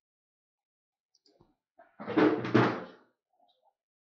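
A single drawn-out creak lasting about a second, a little past halfway through, in an otherwise near-silent room.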